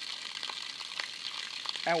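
Spring water running from the rock, a steady hiss with a few faint ticks.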